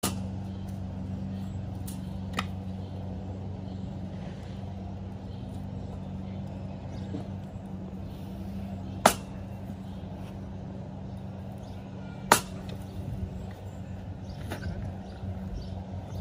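Two sharp knocks about three seconds apart, with a couple of fainter taps, from a hammer striking a wooden block to tap landscape edging down into the soil. A steady low hum runs behind.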